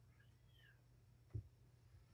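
A kitten gives one faint, high meow that rises and falls about half a second in, over a low steady hum; a single soft thump follows about a second later.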